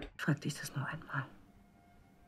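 Quiet, soft speech for a little over a second, then a faint background with a thin steady tone.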